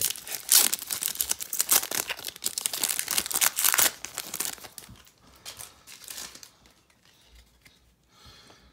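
Foil wrapper of a baseball card pack being torn open and crinkled by hand: a dense run of crackles for about four seconds, which then dies down to faint rustling.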